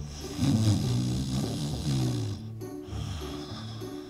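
Background music with a snoring sound effect over it, loudest in the first two seconds.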